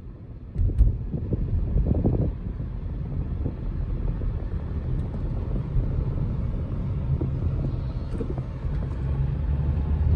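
Car engine and road noise heard from inside the cabin, rising about half a second in as the car moves off, then a steady low drone.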